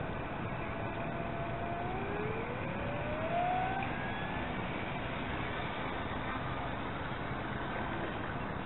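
A radio-controlled model Beaver floatplane's motor and propeller whine as it taxis across the water. The whine rises in pitch about two to four seconds in as the throttle opens, over a steady hiss.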